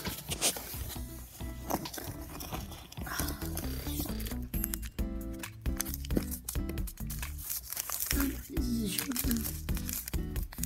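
Background music plays throughout, with crinkling, rustling and tapping of cardboard and paper packaging as the kit's insert and a paper sugar packet are handled.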